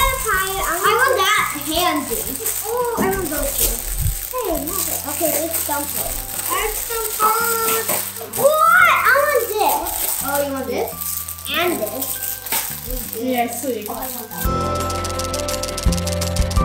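Plastic bags crinkling and rattling as novelty party glasses are unwrapped and pulled out of them, under children's voices and background music. The music changes near the end.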